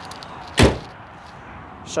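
Pickup truck tailgate slammed shut once, about half a second in: a single solid thud, the tailgate latching closed.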